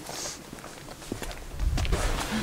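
Footsteps on stone paving, a loose string of short scuffing clicks, with a low rumble on the microphone building near the end.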